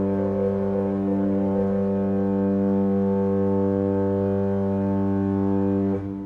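Historic French Baroque pipe organ (Bénigne Boillot, 1768) holding one long, steady low chord with the cromorne reed stop sounding in the bass, the closing chord of a Basse de Cromorne movement. The chord is released at the very end.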